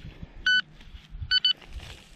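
Handheld pinpointer probe beeping over the dug soil: one short beep about a quarter of the way in, then two quick beeps near the end. The beeps signal metal close to the probe tip.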